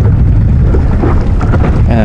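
Wind buffeting the microphone: a loud, steady, low rumble that flickers without pause.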